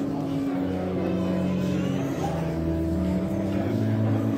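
Slow organ music: long sustained chords, each held for a second or more before moving to the next.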